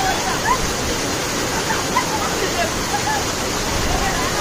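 Waterfall pouring down a rock face into a shallow pool: a dense, steady rush of water, with scattered distant shouts and voices of people over it.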